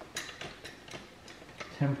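A few faint metallic clicks from a hydraulic floor jack being worked under a load, mostly in the first half.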